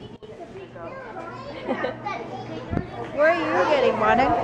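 Children's high-pitched voices with other indistinct talk, growing louder in the last second or so.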